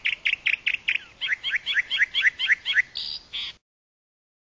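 A small songbird singing: a quick run of repeated chirps, then a string of downward-slurred notes about five a second, ending in two short buzzy notes before it cuts off suddenly.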